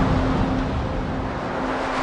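Logo-intro whoosh sound effect: a broad rushing noise with a faint low hum under it, easing off slightly and then cutting off suddenly at the end.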